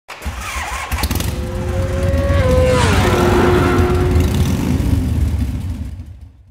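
Motorcycle engine running under power, with a steady low rumble. About three seconds in its pitch drops sharply, then holds lower and fades away near the end.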